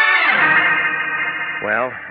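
Organ music bridge from an old-time radio drama: a held chord whose low notes drop away at once and whose upper notes fade out. A man's narrating voice starts near the end.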